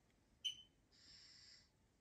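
Near silence, broken just under half a second in by one short sharp click with a brief ringing tone, then a soft high hiss lasting under a second.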